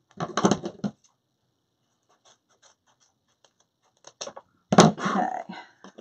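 Scissors cutting dovetail ends into ribbon streamers: a scratchy snip just after the start and a longer one about five seconds in, with faint ticks between.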